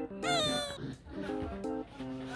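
Young arctic fox giving one short, high, whining cry that falls slightly in pitch, about a quarter second in, over acoustic guitar background music.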